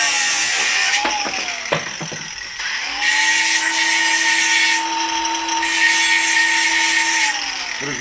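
Cordless angle grinder running with a steady whine, its disc grinding CPVC pipe stub-outs in two spells of harsh hissing contact, with a few clicks in between. It spins down near the end.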